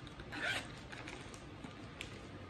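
The zipper of an MCM tote's interior pocket being pulled in one short zip about half a second in, followed by fainter handling noise from the bag.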